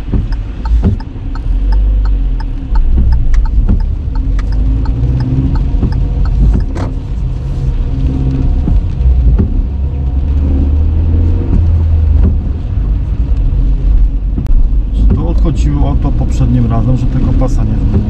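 Car engine and tyre rumble heard from inside the cabin as the car pulls away from a standstill and accelerates on a wet road. A regular ticking, about two a second, from the turn indicator runs through the first half.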